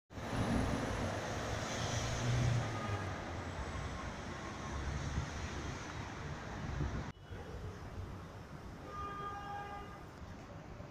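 City street traffic noise: a steady rumble of passing vehicles, dropping suddenly about seven seconds in to a quieter level.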